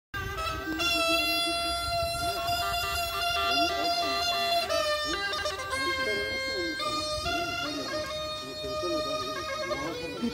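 Tulum, the Black Sea bagpipe, playing a horon dance tune: a continuous melody of held notes stepping up and down without a break, with voices underneath.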